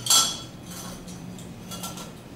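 A metal hand-held lemon squeezer clinks sharply against a glass bowl, with a short ringing tail, and clinks again more faintly near the end.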